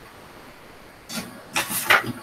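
Printer running as it feeds out a printed sheet: a short burst of mechanism noise about a second in, then a longer, louder one near the end.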